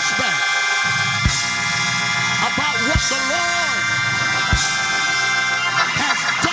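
Church keyboard holding sustained chords, with a kick drum striking about every second and a half. About halfway through, a voice calls out in long, sliding held notes over the music.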